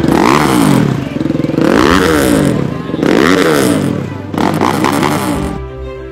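Kove rally motorcycle's single-cylinder engine revved four times, each rev rising and falling in pitch, about a second and a half apart. Music comes in near the end.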